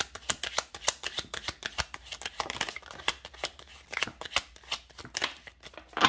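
A deck of fortune-telling cards being shuffled by hand: a quick, uneven run of crisp card flicks and snaps, several a second. A sharper slap comes at the very end as cards are put down on the wooden tabletop.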